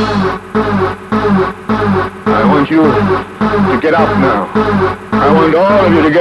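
Rave dance track with a sampled man's spoken voice chopped into short stuttering fragments. The fragments are cut off in rhythm about twice a second over a steady bass note.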